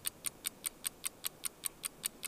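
Fast, even clock-like ticking sound effect, about six or seven ticks a second.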